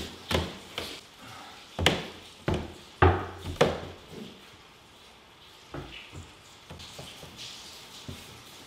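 Footsteps on bare pine stair treads as a person climbs the stairs: about six heavy steps in the first four seconds, then a few fainter knocks near the end.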